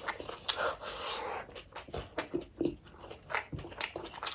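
Close-miked mukbang eating sounds: wet mouth noises of chewing rice and fish curry, broken by sharp lip smacks and clicks every second or so.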